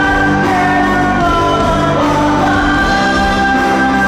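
A rock band playing an original Tagalog-language song, with vocals holding long sustained notes that step from pitch to pitch over the band.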